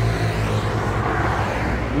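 A road vehicle passing close by: its noise swells to a peak about a second in and eases off, over a steady low hum.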